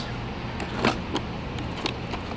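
A few light clicks and knocks of clear plastic parts-organizer boxes being handled and shifted in a toolbox drawer, over a steady low hum.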